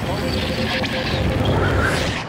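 Broadcast graphic transition sound effect: a noisy whoosh over arena crowd noise, brightening near the end.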